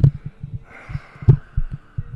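Breath on a close microphone: irregular low thumps, the strongest at the start and about a second and a half later, with a soft exhale hissing through the second half.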